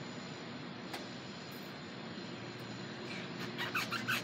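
Steady background noise, with a faint click about a second in and faint voices starting near the end.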